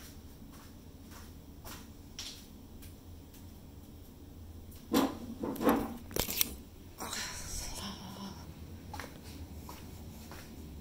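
Steady low room hum, with a cluster of knocks and bumps about five to six and a half seconds in, followed by a brief rustle.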